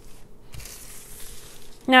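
Thin plastic bag packaging rustling and crinkling softly as it is handled.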